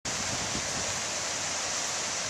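Water pouring down a stepped stone cascade weir into a pond, a steady rushing hiss.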